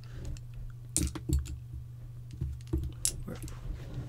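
Light clicks and taps of small nail art brushes being picked up, handled and set down, about half a dozen scattered knocks, over a steady low hum.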